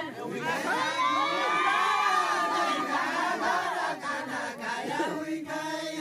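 A crowd of many voices cheering and shouting over one another between verses of deuda group singing, with the line's sung chant picking up again near the end.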